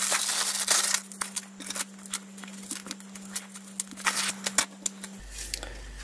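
Plastic mailer bag crinkling and rustling as it is torn open and handled, densest in the first second, then lighter scattered rustles and clicks.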